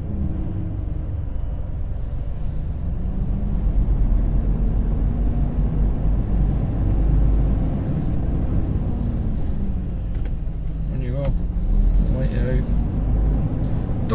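Volvo FH16 750's 16-litre straight-six diesel heard from inside the cab, a steady low rumble whose pitch drifts up and down a little as the truck drives slowly through town traffic.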